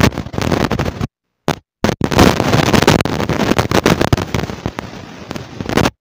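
Wind buffeting the phone's microphone: a loud, crackling rumble that cuts out abruptly a few times and comes back.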